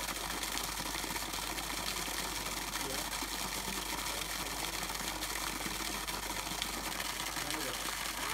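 Hose water splashing steadily into a muddy puddle, over a steady mechanical hum.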